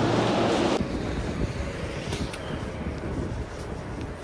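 Steady outdoor background hiss that cuts off abruptly under a second in, giving way to a quieter, low street rumble.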